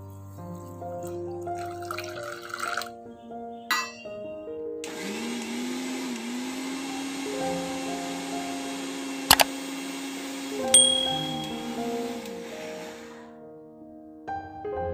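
Electric mixer grinder grinding cashews and seeds into a paste, its motor starting about five seconds in and running for about eight seconds with a steady hum, two sharp clicks partway, and a wavering pitch near the end as the load shifts, over soft background music.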